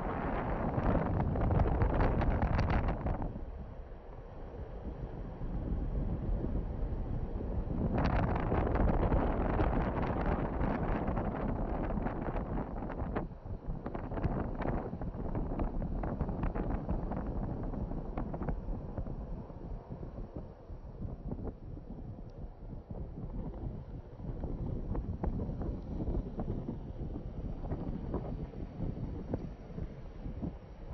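Wind buffeting the microphone in gusts, loudest in the first three seconds and again from about eight to twelve seconds in, easing off toward the end.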